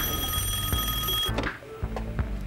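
Telephone ringing with a steady electronic tone that cuts off a little over a second in, over a low music bed.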